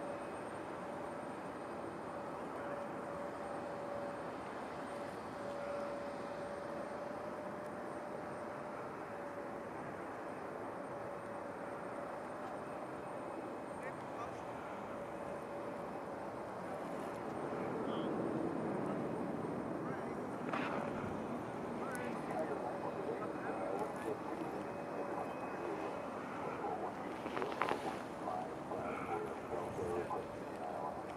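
Jet engines of a Boeing 787 landing and rolling out on the runway: a steady rushing hum with one high whining tone held through it. The sound grows louder about eighteen seconds in, with a few sharp clicks over the last several seconds.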